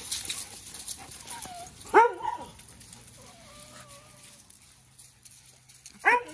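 A dog gives one short bark about two seconds in, then a faint wavering whine a second or two later.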